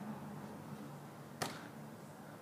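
A single sharp smack about one and a half seconds in, from a medicine ball thrown up and caught during wall-ball reps, over a faint steady low hum.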